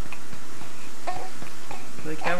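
A short, faint coo from a young baby about a second in, over a steady background hiss.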